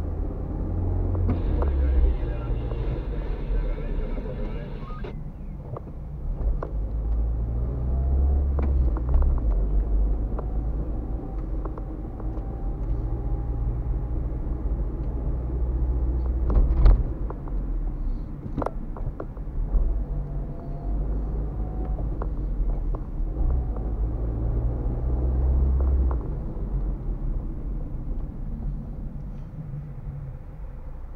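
Car driving in slow city traffic, heard from inside the cabin: a steady low engine and tyre rumble, with a few sharp knocks about two-thirds of the way through.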